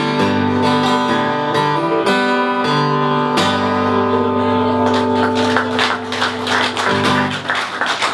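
Acoustic guitar with a soundhole pickup, strummed with a pick through chord changes in an instrumental passage with no singing. From about five seconds in, the strums turn sharper and more percussive.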